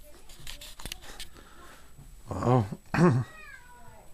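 A few faint clicks, then two loud drawn-out vocal sounds a little over two seconds in, each rising and falling in pitch, the second trailing off in a falling glide.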